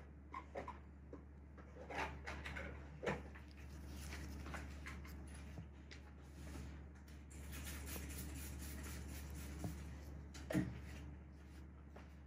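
Quiet room noise: a steady low hum under scattered small clicks and rustles, with a soft hiss through the middle stretch.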